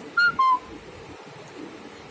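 Two short whistled notes near the start, the second one lower.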